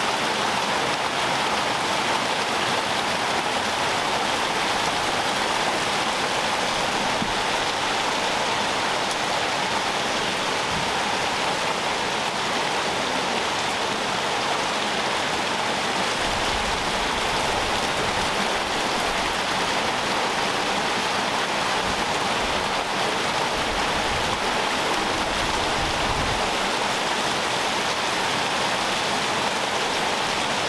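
Steady rushing of running water, with a few low rumbles in the second half.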